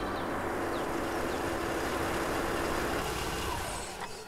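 Mercedes-Benz C-Class saloon driving slowly along a dry dirt track, engine running steadily over the noise of its tyres on the dirt; the sound fades near the end.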